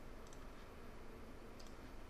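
Faint computer mouse clicks: a quick double click about a third of a second in and another near the end, over a steady low background hiss.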